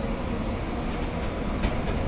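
Cabin noise inside a moving battery-electric city bus: a steady low rumble of tyres and road with no engine note, and a few light rattling clicks of the fittings about a second and a half in.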